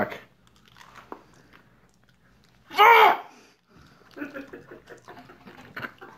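Jelly beans being chewed, with faint wet chewing and mouth sounds. About three seconds in comes one short, loud vocal outburst from one of the tasters.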